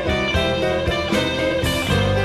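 Live electric blues band playing, with an electric guitar taking the lead over bass guitar and drums.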